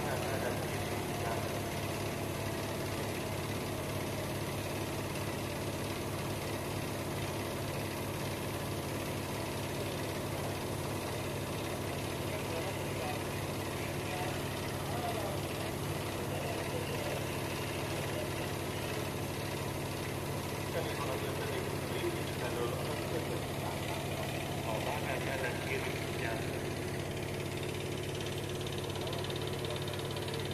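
MÁV class V43 electric locomotive standing under the wire with its pantograph raised, its transformer and cooling fans giving a steady low hum.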